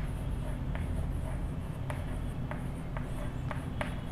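Chalk writing on a blackboard: faint scratching with a few light, sharp taps as the letters are formed.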